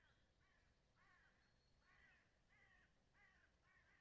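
Near silence, with faint repeated calls from a bird, about two a second.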